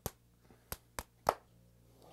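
Hands slapping: fists pumping down onto open palms in a rock-paper-scissors count, four sharp slaps with the last one loudest.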